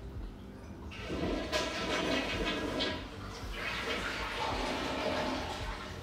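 A toilet flushing: a rush of water starts about a second in, dips briefly near the middle, and runs on for a few more seconds before settling.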